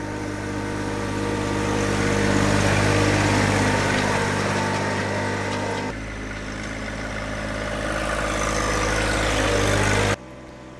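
John Deere 1025R compact tractor's three-cylinder diesel engine running steadily under load while pushing wet snow with a front blade. It grows louder as the tractor comes closer, changes abruptly about six seconds in, then builds again.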